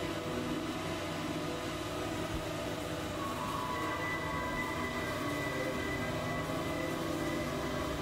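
Dense experimental electronic drone music: many overlapping held tones over a steady, noisy low rumble, with a higher held tone entering about halfway through.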